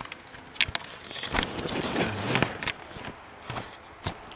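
Handling noise of the camera being picked up and moved: rustling with several knocks and clicks, busiest in the middle.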